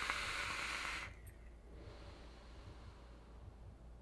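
Steady airflow hiss of a vape hit drawn through a Hellvape Dead Rabbit V2 dual-coil RTA, which stops about a second in.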